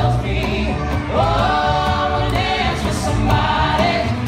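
Live funk trio: a woman singing over bass guitar and guitar, with a strong, busy bass line and an even rhythmic beat. A long sung note begins about a second in.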